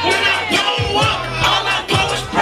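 Loud hip hop music with a heavy, gliding bass, and a crowd of voices shouting along with it.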